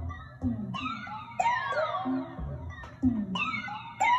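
Electronic percussion loop from a Moog DFAM analog percussion synthesizer playing back: a repeating pattern of pitched hits that each sweep sharply down in pitch, over low kick-like thumps.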